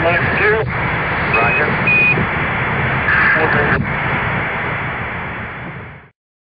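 Crackling Apollo air-to-ground radio link: steady static hiss with faint, broken voice fragments, and two short high beeps of the Quindar tones that key the transmission, about one and a half and two seconds in. The hiss fades over the last couple of seconds and cuts off.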